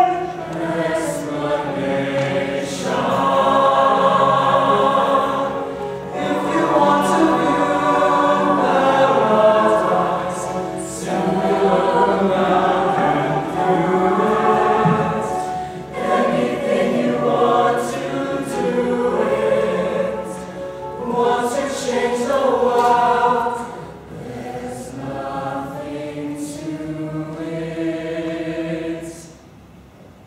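Mixed-voice show choir singing together in full harmony, phrase after phrase with short breaks between them.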